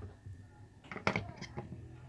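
Light plastic clicks and knocks from the pulsator of a Sharp top-loading washing machine as its centre piece is handled and lined up on the hub, a short cluster about a second in, over a faint low hum.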